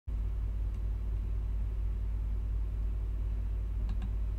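A steady low hum, with a faint click shortly before the end.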